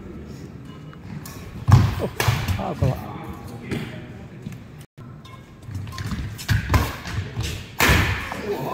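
Badminton doubles rally in an indoor hall: a run of sharp racquet strikes on the shuttlecock and players' footfalls on the court, the loudest hit about two seconds in, with voices in the background.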